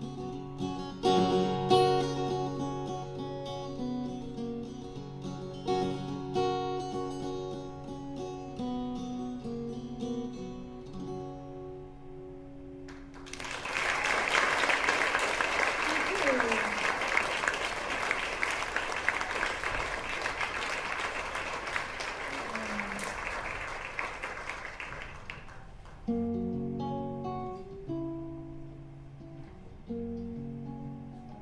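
Acoustic guitar playing, ending about 13 seconds in. An audience applauds for about 12 seconds, then the acoustic guitar starts again.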